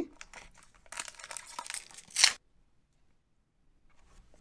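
Foil booster-pack wrapper crinkling in the hands and being torn open, ending in one short, sharp rip about two seconds in.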